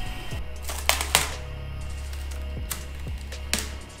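Motorised roller hot-stamping machine running with a steady low hum as a licence plate is fed through to have its raised characters coated with ribbon foil, with three sharp clicks from the plate and rollers, two close together about a second in and one near the end.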